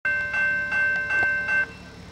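Railroad grade-crossing warning bell ringing in quick, evenly spaced strokes, about two and a half a second, then stopping suddenly near the end.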